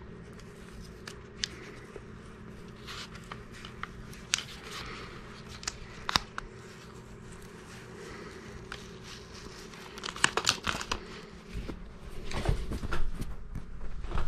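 Paper and vinyl sheets being handled and peeled by hand: crinkling and rustling with scattered light clicks, growing busier and louder about ten seconds in.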